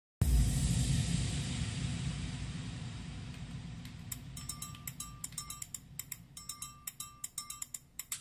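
Intro sting under the logo: a sudden low rumble that fades away over the first half, then about halfway in a quick run of dry clicks, like a shaker, with short beeps at one pitch mixed in.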